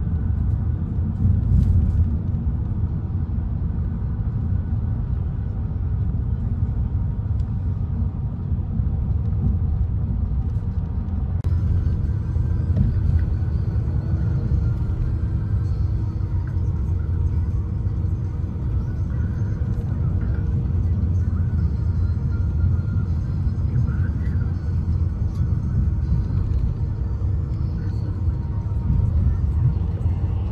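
Steady low road rumble of a vehicle driving at highway speed, heard from inside the cabin, with more high hiss coming in about a third of the way through.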